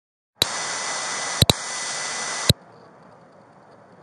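Audio cutting in from silence with a loud burst of harsh electronic static hiss about two seconds long. It clicks sharply at its start, twice near the middle and again as it cuts off, then drops to a faint background hiss.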